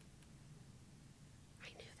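Near silence: room tone with a faint low hum. Near the end a woman starts speaking softly, half under her breath.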